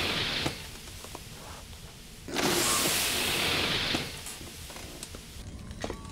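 Cartoon sci-fi lab machinery sound effect: a hiss of releasing air that stops about half a second in, then a second hiss lasting nearly two seconds, over a low steady machine hum.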